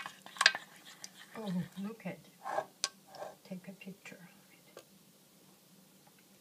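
A bamboo spoon stirring yogurt in a metal saucepan, knocking against the pan with a few sharp clicks, under a soft low voice.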